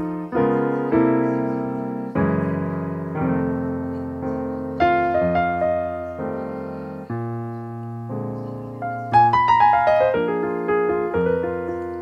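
Digital stage piano playing a slow 12-bar blues in solo-piano style: left-hand bass and right-hand chords struck every second or so and left to ring. About nine seconds in comes a quick run of notes before the chords resume.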